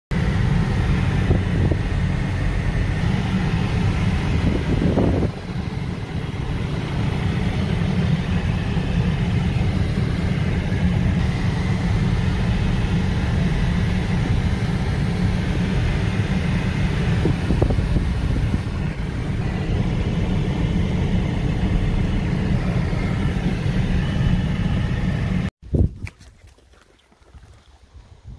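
Road and engine noise inside a BMW's cabin while driving: a steady low rumble with a hiss above it, which cuts off suddenly near the end.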